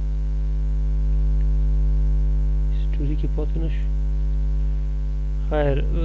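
A steady, low electrical hum carried on the recording. A short spoken word breaks in about halfway through, and a man's voice starts again near the end.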